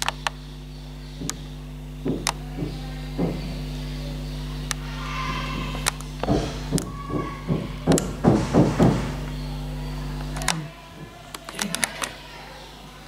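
A steady low hum with scattered clicks and knocks, busiest past the middle. The hum cuts off suddenly near the end.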